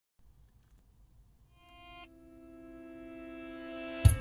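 The intro of a song played on a custom car audio system inside a Toyota Prius α's cabin. Sustained chords fade in about a second and a half in, change about two seconds in, and swell steadily louder.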